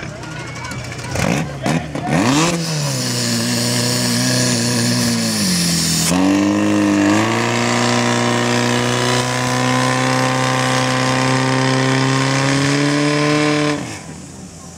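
Portable fire pump engine starting about two seconds in and revving up. It dips briefly near the middle, then climbs to a steady high-revving run under load, drawing water from the pool and feeding the attack hoses.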